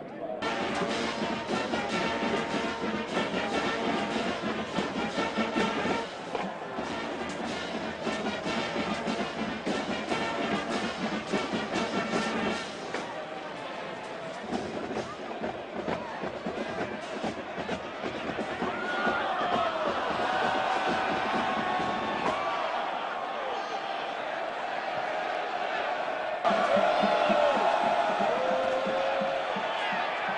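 Football stadium crowd noise mixed with music and voices, in several segments that change abruptly every few seconds.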